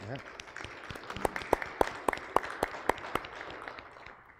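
Congregation applauding, with a pair of hands clapping sharply near the microphone, about five claps a second, tailing off near the end.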